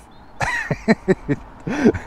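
A man laughing in a few short, breathy bursts.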